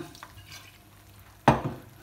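Risotto simmering in a non-stick pan, stirred with a silicone spatula: a soft sizzle and scraping. About one and a half seconds in comes a single sudden loud knock.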